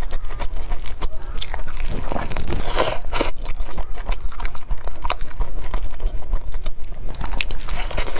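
Close-miked biting and chewing of a steamed meat-filled dumpling, with short wet mouth clicks and smacks; the loudest run of bites comes about midway. The thick wrapper holds little soup.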